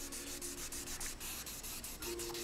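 Fine 2000-grit sandpaper rubbed under the fingertips over the painted housing of a motorcycle mirror, in quick, even strokes. The paint is being sanded flat before it is buffed.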